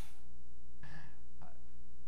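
Steady electrical mains hum with evenly spaced overtones, as loud as the speech around it, and a brief faint vocal sound about a second in.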